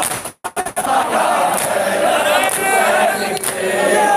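A crowd of men chanting a noha in unison, with sharp, rhythmic hand slaps on chests (matam) about once a second. The sound cuts out briefly about half a second in.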